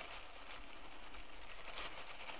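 Faint rustling of white tissue paper wrapping as fingers pick at the sticker that seals it.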